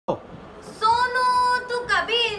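A high female singing voice holds one long steady note from about a second in, then slides in pitch at the end.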